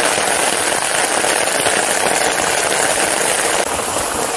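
Steady rushing noise of heavy rain, heard from a vehicle moving along a wet road.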